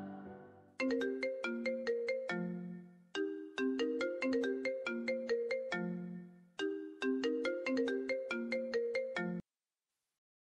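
Mobile phone ringtone: a bright, melodic tune of short notes whose phrase plays three times, then cuts off suddenly near the end as the call is answered.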